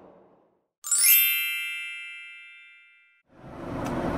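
A single bright chime, an editing transition sound effect, struck once and ringing out as it fades over about two seconds. Low cabin noise fades in near the end.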